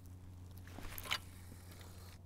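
Faint handling sounds of a spinning rod and reel just after a cast: two short ticks a little under and just over a second in, over a steady low hum.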